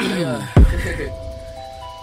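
Hip-hop beat: sustained bell-like synth notes, a short vocal falling in pitch at the start, and one deep bass hit about half a second in.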